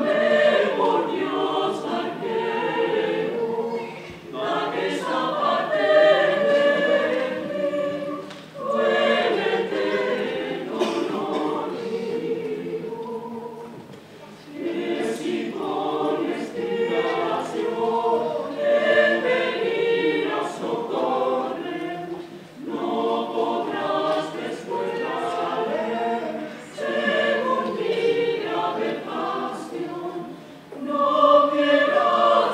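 Mixed choir of men and women singing under a conductor, in phrases broken by short pauses for breath.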